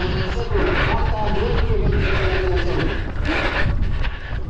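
Wind rumbling on the microphone of a running camera, with hard rhythmic breathing about once a second and a distant announcer's voice over stadium loudspeakers.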